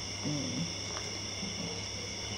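A steady high-pitched whine of several tones. A short, faint low hum comes about a quarter-second in, and a light click about a second in.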